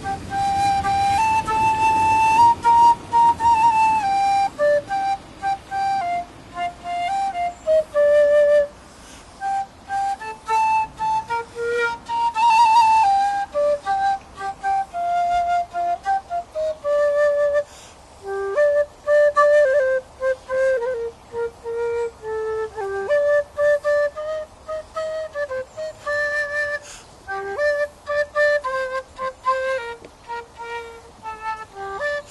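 A black end-blown whistle playing a slow, unaccompanied nigun melody, one clear note at a time in stepwise phrases with short breaths between them.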